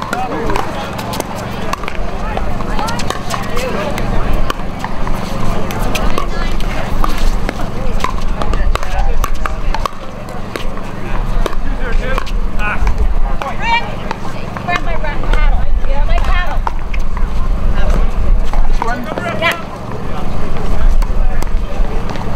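Pickleball paddles hitting a plastic ball during doubles rallies: sharp pops at irregular spacing, some nearer and louder, others from surrounding courts. Voices chatter around them, over a low rumble.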